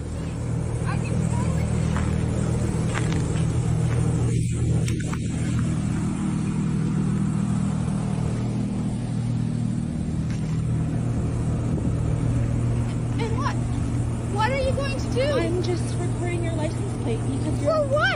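A car engine idling steadily, joined by indistinct voices near the end.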